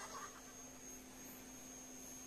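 Faint steady hum: one low tone with a thin high whine above it, in a gap between music.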